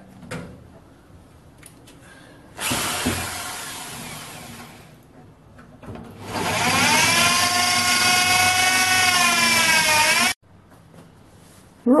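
Electric drill boring into a sheet-steel toolbox, drilling the ends off the latch fastenings: a short bout of drilling, then a longer steady whine that sags slightly in pitch before cutting off suddenly.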